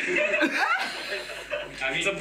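People chuckling and laughing, with speech mixed in.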